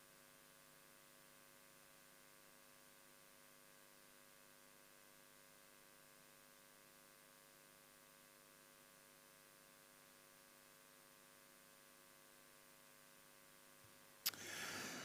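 Near silence with a faint, steady electrical hum from the sound system.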